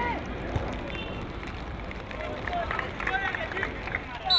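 Footballers shouting and calling to each other in short bursts across an outdoor pitch, over steady background noise.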